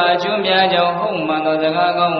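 A Buddhist monk chanting: one man's voice held on a steady, level pitch that steps down slightly about a second in.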